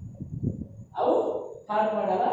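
A man's voice between phrases of a lecture: a short audible breath about a second in, then speech resuming near the end.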